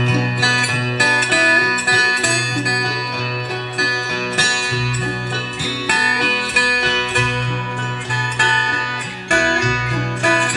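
Bluegrass band playing live with no singing: dobro (resophonic guitar), banjo, acoustic guitar and upright bass, with a busy run of plucked notes over a steady walking bass.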